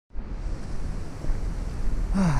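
Wind buffeting the camera microphone: a rushing noise with an uneven low rumble.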